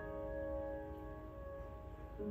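Grand piano chord held and ringing, slowly fading away with no new notes struck.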